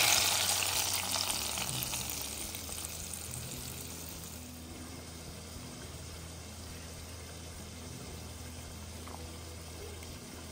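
Hot oil with fried onions poured onto a pot of thin rice-and-lentil khichuri, hissing loudly on contact and dying away over about four seconds. A wooden spatula then stirs the simmering pot faintly.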